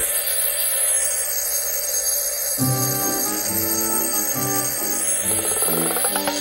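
Twin-bell mechanical alarm clock ringing continuously. Cartoon background music comes in about two and a half seconds in.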